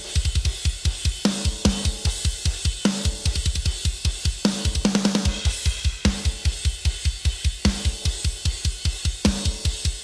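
Metal drum kit recording played back through the mix: rapid double-kick bass drum under a steady wash of cymbals, with a snare hit about every 0.8 seconds. The parallel-compressed drum bus is being brought up under the normal drum mix to add punch.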